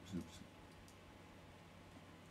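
A few faint computer keyboard clicks as a word is typed, with a short low voice sound just after the start.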